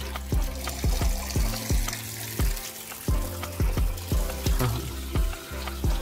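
A stream of water pouring and splashing into a glass bowl in a guppy tank, with background music that has a steady beat of about two strikes a second.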